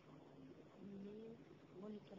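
Near silence: quiet room tone, with a faint low pitched murmur about a second in and again briefly near the end.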